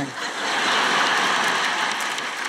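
A large audience laughing together, swelling in the first half-second and slowly dying away.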